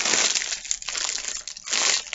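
Plastic candy bag crinkling as it is handled, with louder rustles at the start and again near the end.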